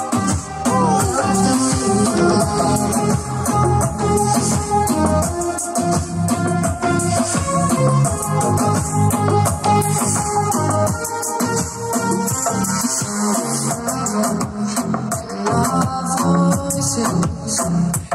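Dance music with a steady beat and shaker-like percussion.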